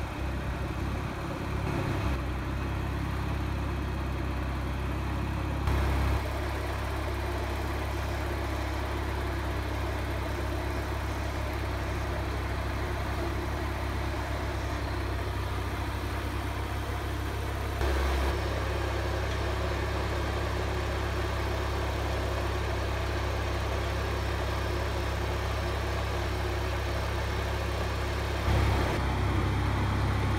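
John Deere 400 garden tractor's twin-cylinder engine running steadily, its level jumping abruptly a few times.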